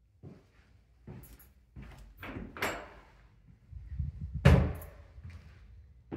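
Interior door being handled: a string of irregular knocks and bumps, the loudest a heavy thud about four and a half seconds in.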